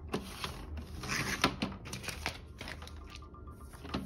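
Sheets of laminating film being handled and cut on a sliding paper trimmer: a series of clicks and plastic rustles, with a short noisy stretch about a second in.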